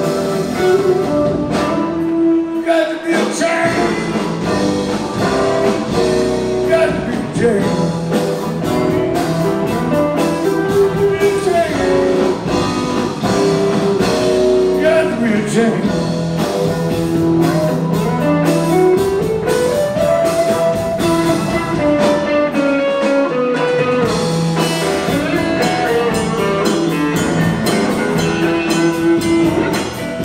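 Live blues-rock band: a hollow-body electric guitar plays a lead solo of single-note lines with bends and slides, one long slide rising in pitch over a couple of seconds in the latter half, over electric bass and drums.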